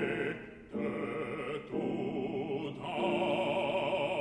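Male operatic baritone singing short phrases with a wide vibrato, broken by brief pauses.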